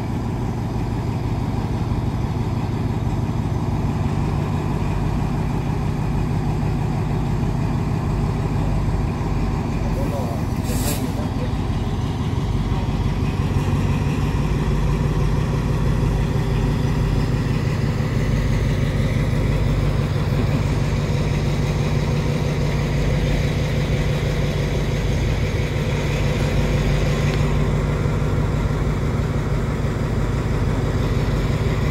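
Diesel locomotive engine running with a steady low drone while shunting passenger coaches, with a brief hiss about ten seconds in.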